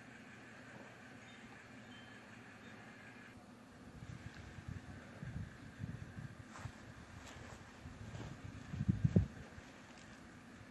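Faint steady hum that cuts off about three seconds in, giving way to outdoor sound: wind gusting on the microphone in irregular low rumbles, strongest near the end.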